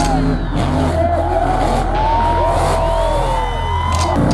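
Mud-bog trucks' engines revving, several at once, their pitch rising and falling in overlapping sweeps.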